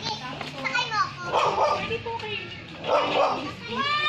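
A dog barking twice, about a second and a half apart, amid people's voices.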